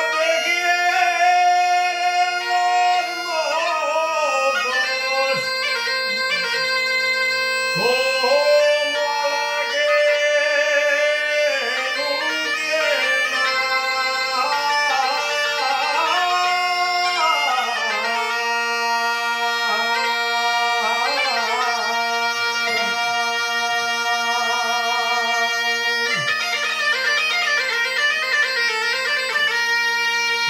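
Asturian bagpipe (gaita asturiana) playing an ornamented melody over its single steady drone.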